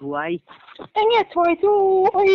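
A man's voice: short spoken syllables, then from about a second in long, drawn-out held notes.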